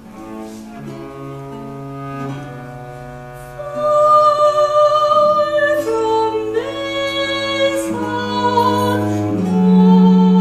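Soprano singing an early 17th-century English lute song, accompanied by bowed viola da gamba, baroque violins and lute. The music grows louder from about four seconds in.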